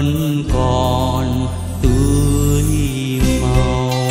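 Instrumental music from a Vietnamese nhạc vàng spring-song medley: sustained melody and bass notes that change about once a second, with no singing.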